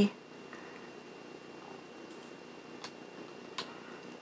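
Quiet room noise with two faint short clicks, one just under three seconds in and one about three and a half seconds in.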